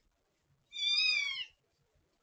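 A newborn kitten, eyes still sealed shut, gives one high, thin mew lasting just under a second, starting less than a second in and falling in pitch at the end: an angry protest at being handled.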